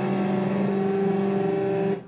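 Distorted electric guitars holding one sustained chord without drums, ringing steadily, then stopped abruptly at the very end.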